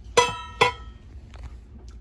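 Two ringing clinks on a white ceramic bowl, about half a second apart, as something hard strikes it, followed by a few faint small taps.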